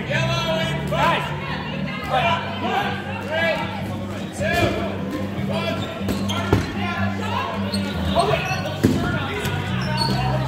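Rubber dodgeballs hitting and bouncing on a hardwood gym floor during play, with sharp hits about six and a half and nine seconds in. Music with singing plays underneath throughout.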